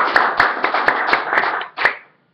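Audience applauding, dying away near the end with one last clap.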